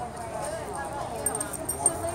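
Indistinct voices of people talking, with two short sharp clicks in the second half.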